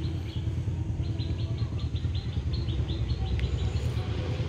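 A bird calling a quick, even series of short high chirps, about four or five a second, over a steady low outdoor rumble.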